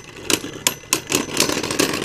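Two Beyblade Burst spinning tops, Kerbeus Central Defense and Kerbeus Wing Fusion, whirring in a clear plastic stadium and clacking against each other, about six sharp hits in two seconds.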